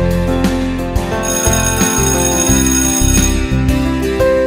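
Background music, with a high ringing signal sound that starts about a second in and lasts about two seconds: the cue to stop and change to the next skill.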